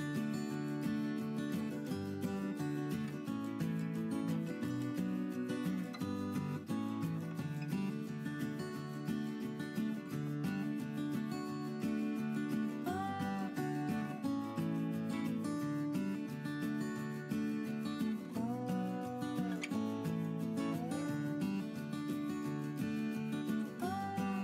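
Background music: strummed acoustic guitar with a steady rhythm.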